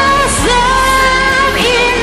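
A high voice sings over backing music, holding a long note in the middle and sliding up into the next one near the end.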